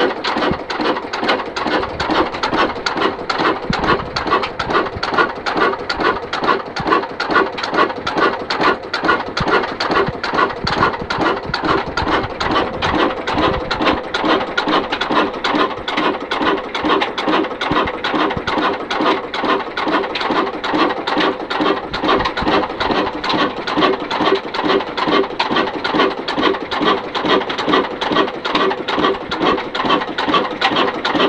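Ruston & Hornsby single-cylinder diesel engine running steadily at slow speed, its valve gear and fuel pump clattering in an even rhythm of beats.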